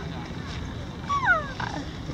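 A sika deer gives one short, high squeal that falls sharply in pitch, about a second in.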